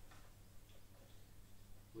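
Near silence: room tone with a low steady hum and a few faint ticks.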